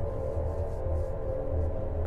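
Dark ambient background music: a low, steady sustained drone with faint held tones.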